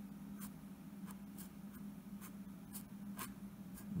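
Felt-tip pen drawing on paper: a series of short, faint scratchy strokes as a small box is sketched.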